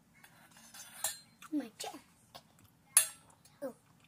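Two sharp clinks, one about a second in and a louder one about three seconds in, among brief murmured exclamations.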